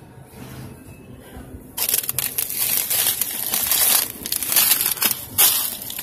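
Loud, dense crackling and rustling handling noise right against the phone's microphone, starting about two seconds in after a quieter stretch.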